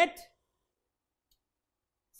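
A man's voice says a single word at the very start, then the sound drops to silence.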